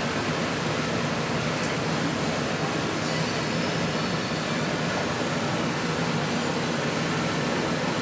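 Steady hum and rush of air conditioning running in a small showroom, with a low drone underneath.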